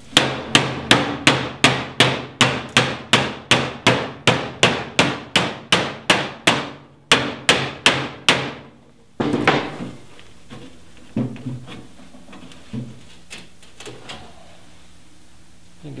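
Rubber mallet tapping steadily on the sheet-steel fold of a Jeep Cherokee XJ rear quarter panel, about three blows a second, bending the folded edge along its crease. The tapping stops about nine seconds in, and a few quieter scattered knocks follow.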